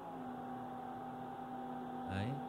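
Doosan DX140W wheeled excavator's engine running steadily, heard as a low hum with a faint held whine above it.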